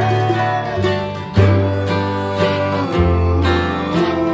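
Bluegrass played on mandolin, upright bass and acoustic guitar together. The upright bass moves to a new note every second or so under the picked and strummed strings.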